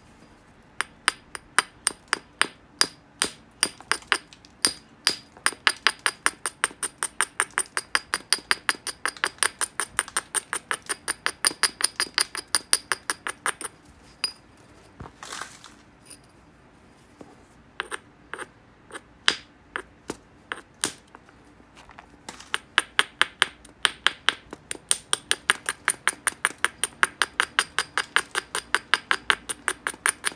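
Hammerstone clicking against the edge of a black obsidian biface in quick, light, evenly spaced strokes, about three a second. The strokes come in two long runs with a sparser pause in the middle.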